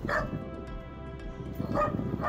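Pit bull type dog barking at a monkey, playfully: one short bark just after the start and another near the end, over background music.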